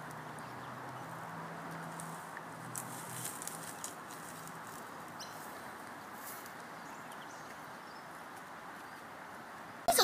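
Steady outdoor background noise, with a faint low hum in the first few seconds and a few light ticks about three seconds in.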